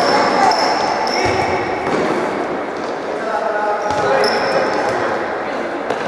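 Futsal game in a reverberant sports hall: players shouting and calling to each other, the ball being kicked and bouncing on the court floor, and short high squeaks of shoes on the polished floor, twice.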